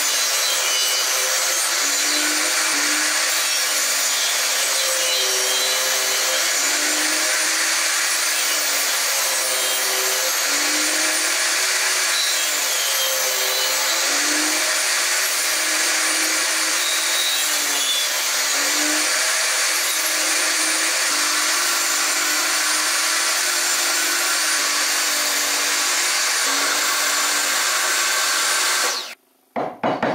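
Table saw running and cutting slots into a pine board held upright in a tenoning jig, with the blade's pitch dipping and recovering as it takes the load of the cut. The saw stops abruptly near the end, and a few short taps follow.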